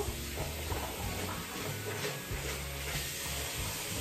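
Bathroom tap running steadily, a constant hiss of water as a small facial cleansing sponge is wetted under it, with quiet background music beneath.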